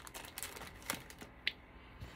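Faint, scattered clicks and light rustling as a plastic-bagged sticker sheet is handled and set aside on a cutting mat.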